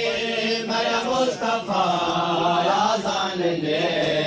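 A Muharram noha chanted by a party of male reciters (nohakhans), a melodic lament in Saraiki/Urdu with long held, wavering notes.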